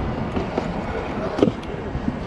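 Pro scooter's wheels rolling over concrete: a steady rolling rumble, with a light knock about one and a half seconds in.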